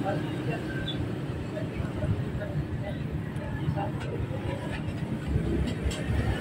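Steady workshop background rumble with faint small clicks as wires and connectors are handled.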